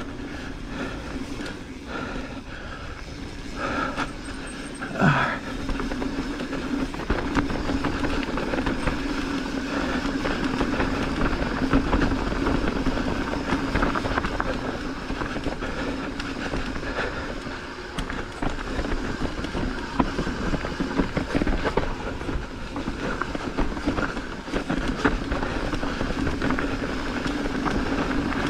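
Mountain bike rolling fast down a dirt trail: knobby tyres rumbling over packed dirt with a steady hum, and the chain and frame rattling over small bumps.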